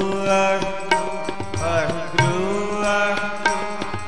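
Sikh kirtan: a male voice sings a sliding, held melody over the steady reedy drone of harmoniums, with tabla strokes marking the rhythm.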